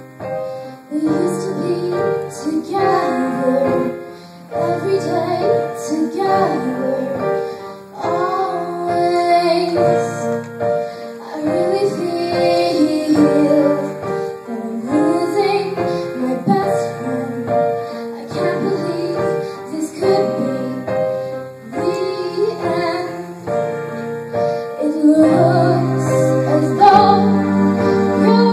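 Live pop band: a girl singing lead into a microphone over acoustic guitar, electric guitar and keyboard. The singing comes in about a second in and carries on with short breaths between phrases.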